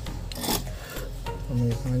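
A short scraping rub about half a second in, as the micro-USB charging connector and flex cable of a phone are worked by hand, over background music.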